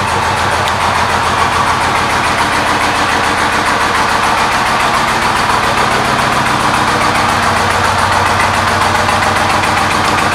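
Yamaha Roadliner S's air-cooled V-twin engine idling steadily.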